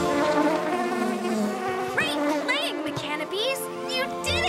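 Cartoon buzzing sound effect of flying robot bees, over background music, with a few quick whistling pitch-glide effects in the second half.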